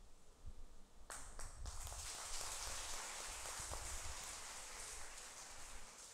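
A congregation applauding: a few separate claps about a second in, quickly building into steady applause that begins to fade near the end.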